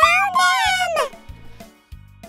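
Children's background music with a steady beat. Over its first second comes a loud, high-pitched squeal that rises and then falls, most likely a child's excited squeal.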